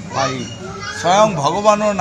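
Speech: a man talking in Assamese.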